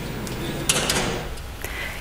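Background noise of a large hall, with a sharp knock a little under a second in and a fainter one near the end.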